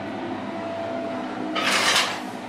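A short rustle near the end, like a bathroom shower curtain being pushed aside, over a steady room hum.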